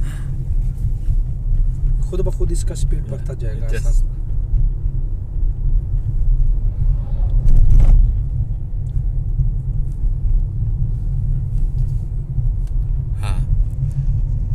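Steady low road and tyre rumble inside a car's cabin as the car coasts in neutral at around forty to fifty km/h.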